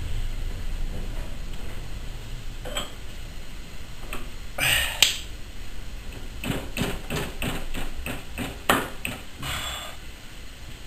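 Metallic clinks, pings and knocks from hand work on the engine-to-transmission drive shaft coupling of a Cub Cadet garden tractor, with one louder knock about halfway and a run of about four clicks a second in the second half.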